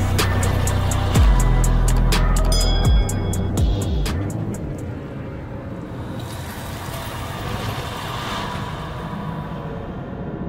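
Outro music: deep bass hits with falling sweeps and fast clicking for about four seconds, then a quieter, hazy bed.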